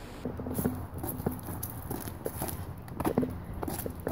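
Footsteps walking on a sidewalk: a run of irregular, light steps.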